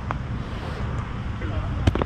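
A putter strikes a mini golf ball with a light click, and the ball rolls across the artificial turf, knocking against the rim of the cup near the end. Wind rumbles on a microphone set close to the ground.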